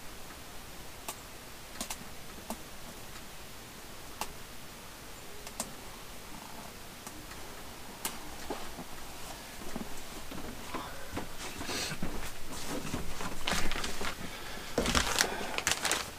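Plastic storage bins and their contents being handled: scattered light clicks and taps of plastic, growing into busier rustling and handling noise with plastic bags in the last few seconds.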